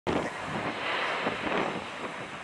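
Jet airliner on landing approach, its engine noise a steady hiss mixed with wind buffeting the microphone.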